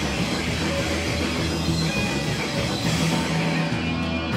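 Live hardcore punk band playing loudly and without a break, with guitar and drums.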